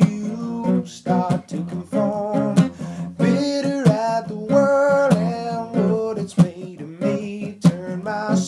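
A man singing a folk-style song to his own acoustic guitar, the chords strummed in a steady rhythm under the vocal line.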